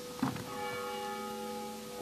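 A bell's ringing tones, several steady pitches sounding together and slowly dying away.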